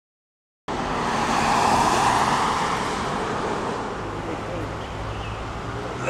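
A car passing on the street: a broad road noise that begins abruptly under a second in, swells, then slowly fades into steady outdoor traffic noise.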